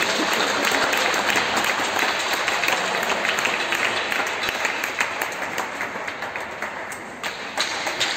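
Applause from a crowd of spectators, many separate hand claps blending together. It slowly thins out, with a few scattered claps left near the end.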